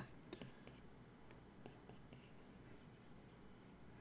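Near silence, with faint scattered ticks of a stylus tapping and stroking an iPad screen.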